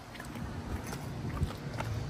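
A few soft footsteps on pavement, about two a second, against faint background noise.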